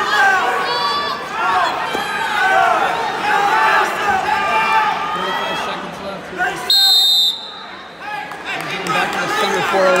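Gymnasium crowd voices and shouting, cut through about seven seconds in by one loud, high-pitched electronic buzzer lasting about half a second: the wrestling match clock's buzzer ending the period.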